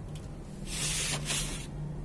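A hand pressing and working dry, crumbly dirt-and-cement mix in a metal basin. It makes gritty, hissing rustles, twice in quick succession about a second in.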